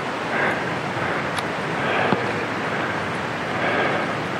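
Steady wind rushing over the microphone, starting suddenly, with two faint clicks in the middle.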